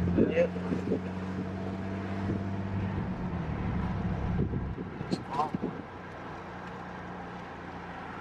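Car engine drone and road noise heard from inside the cabin while driving, a steady low hum that falls away about three seconds in, leaving a quieter steady drone.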